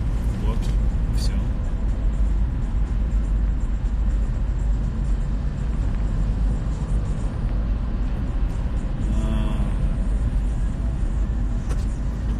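Steady low rumble of a car's engine and tyres heard from inside the cabin while driving.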